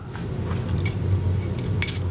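A few light clicks as a 3D printed plastic carriage loaded with Delrin balls is fitted onto an aluminium OpenBeam extrusion, over a steady low hum.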